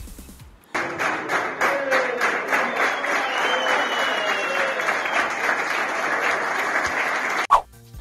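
A group of people clapping together, with faint voices underneath. The clapping starts suddenly about a second in and cuts off abruptly near the end.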